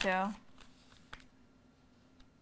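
A woman's brief word, then a quiet pause with faint paper rustling and a soft click as a hardback diary's pages are handled, over a low steady room hum.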